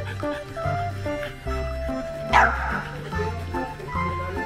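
A single sharp bark from a French bulldog about two and a half seconds in, over background music with a steady bass line.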